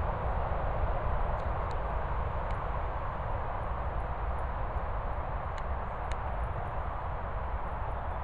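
Steady outdoor background noise, heaviest in a low rumble, with a few faint high clicks.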